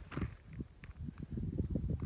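Wind buffeting the microphone: a fast, irregular run of low rumbling thumps.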